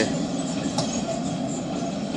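Steady low rumbling background noise, with no single clear event standing out.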